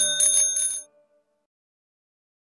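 A bicycle bell rung with quick repeated flicks of its lever, a bright metallic trill of several rings that stops just under a second in.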